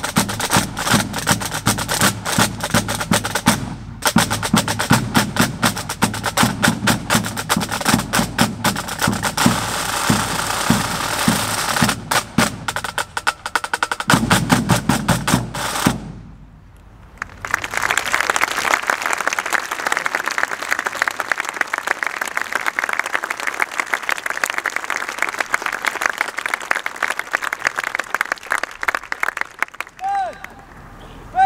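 Pipe band drum corps playing: snare drums with tenor and bass drums beating a steady rhythm, a short pause just past halfway, then the snares carry on with fast strokes and rolls and little bass.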